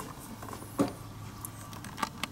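Faint handling noise from a gloved hand moving a rubber A/C hose at the compressor, with a few small clicks and one brief louder rustle a little under a second in.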